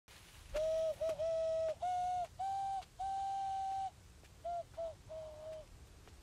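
A person whistling a slow tune: six clear notes stepping upward, the last one held about a second, then three quieter, lower notes that trail off.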